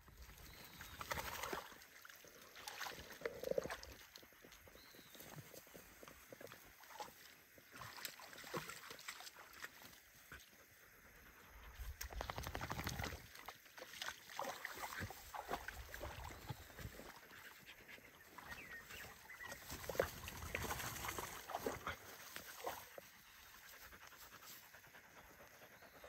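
Faint, on-and-off sounds of dogs panting and wading in a shallow muddy creek.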